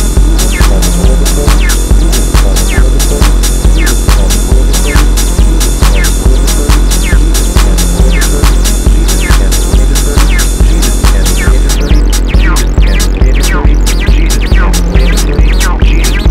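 Acid techno track: a steady four-on-the-floor kick drum at about two beats a second with heavy bass, under short falling squelchy notes from a 303-style acid synth line. The high hi-hats drop out about three-quarters of the way through.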